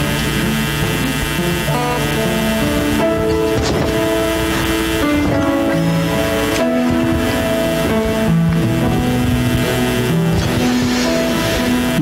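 Live worship band playing soft instrumental music: slow, sustained chords that shift to new notes every second or two.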